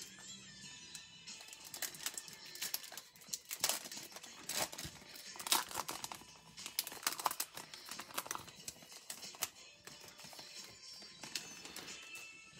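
Foil wrapper of a Donruss Optic football card pack crinkling as it is picked up and torn open, the cards then slid out. Irregular crackling, busiest in the middle.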